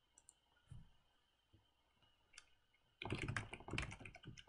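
Computer keyboard typing: a few scattered clicks, then a quick run of key strokes starting about three seconds in.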